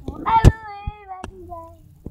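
A child's voice holding one long, wavering note that sinks a little in pitch over about a second. A sharp click comes near its start, then two smaller clicks.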